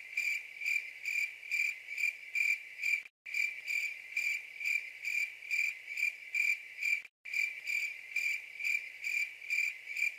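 Cricket chirping sound effect: a steady run of high, evenly pulsed chirps, two to three a second. The loop cuts out for a moment about three seconds in and again about seven seconds in.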